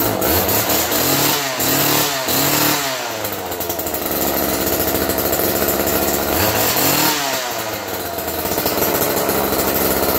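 Homelite Super 2 chainsaw's small two-stroke engine running without its bar and chain fitted, revved up and back down three times in quick succession about a second in, and once more a few seconds later. The saw is burning off oil from a soaked piston on its first run after revival.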